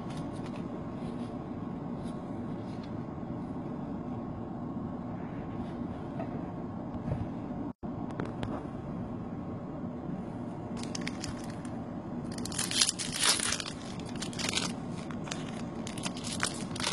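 Foil booster-pack wrapper being crinkled and torn open, in several crackly bursts during the second half, over a steady background hiss.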